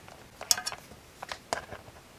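Light ticks and clicks of multimeter probe tips being set against a woofer's small metal terminal tabs, a few sharp ones about half a second in and more near the middle. No continuity beep sounds: the circuit through the voice coil is open.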